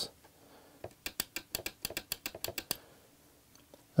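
Micro switch clicking rapidly as the teeth of a clear Perspex disc are worked past its lever by hand: about fifteen light clicks in two seconds, starting about a second in.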